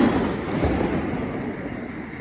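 Firecracker blast echoing back off the surrounding mountains: a rolling rumble that swells again at the start and then fades away steadily.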